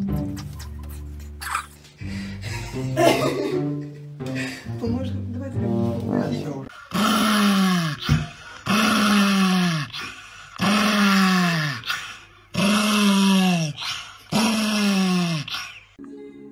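Background music for the first six seconds or so, then a dog howling five times in a row, each howl about a second and a half long and falling in pitch.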